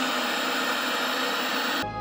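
Television static: a steady hiss of white noise, used as a transition effect. It cuts off suddenly just before the end and gives way to a low hum.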